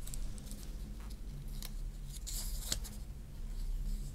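A small folded slip of paper being unfolded by hand: light rustling with a few sharp crackles, most of them around the middle.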